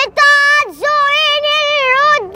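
A boy singing alone in a high voice, holding long drawn-out notes with vibrato: he slides up into a note, dips sharply about a second in, then slides back up and holds the next note.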